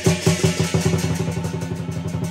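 Lion dance percussion band playing: a loud stroke on the big lion dance drum with cymbals, then a fast, even drum roll of about a dozen strokes a second, the cymbals ringing over it.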